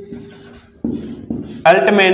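A man's speaking voice trails off, followed by about a second of quiet. Two short, rough, low sounds follow, then his speech resumes near the end.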